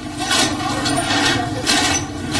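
Loud outdoor commotion: an engine running steadily under rustling and scraping noise from people moving close by, with a few short louder scuffs.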